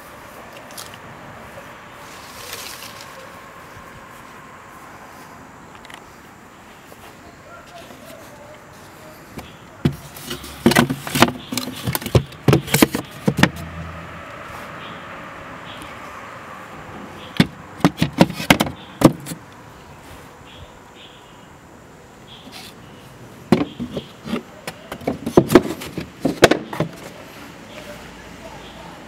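Three bursts of sharp knocks and clatter from handling a wooden dog kennel. The bursts come about ten, seventeen and twenty-four seconds in, each lasting one to three seconds, over a steady outdoor background hiss.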